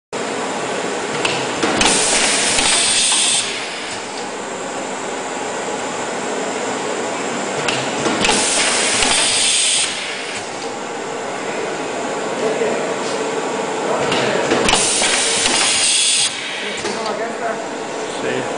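Tauler Printlam CTIS 75 automatic roll laminator running with a steady mechanical noise, broken three times by a loud hiss of air lasting about a second and a half, about six seconds apart, from its pneumatic sheet feeder.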